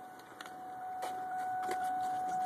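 Ford Mustang being started: the key is turned, with a few sharp clicks and a faint electric whine from the starting system, building from about a second in, just before the engine fires.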